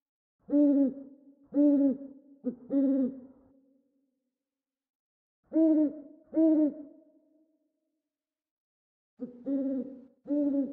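Owl hooting in groups: three hoots in quick succession, two more a few seconds later, and another run starting near the end. Each hoot trails away in an echo.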